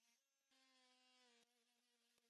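Very faint, steady buzz of an oscillating multi-tool trimming the edge of a plywood insert blank. It is nearly silent, drops out briefly early on, and breaks off abruptly about one and a half seconds in.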